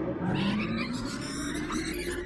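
Animal calls in a dense, noisy jumble of sound, which begins abruptly just before this point and follows the quiet end of the song.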